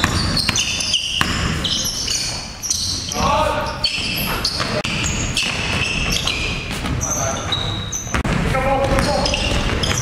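Pick-up basketball in a gym: a ball dribbled on a hardwood floor, sneakers squeaking in short high chirps, and players' voices calling out a couple of times in the echoing hall.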